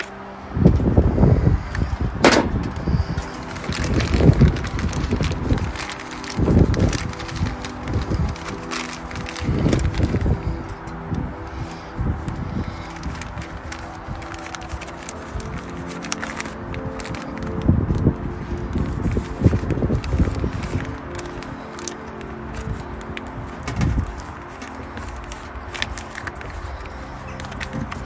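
Black plastic bin liner rustling and crinkling in irregular bursts, with a few sharp clicks, as thin wire is wound around it and twisted by hand. Soft background music with steady held tones plays underneath.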